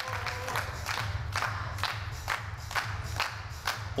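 Clapping and applause from a small group over background music with a steady beat, about two beats a second.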